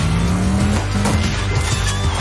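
A car engine sound effect revving up twice, the pitch climbing each time, over background music, with tyre squeal as the cartoon race car speeds away and spins its wheels into smoke.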